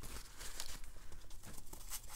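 Scratchy rustling of a damp flat wash brush scrubbing across cold-press watercolour paper, with a paper towel crinkling in the other hand.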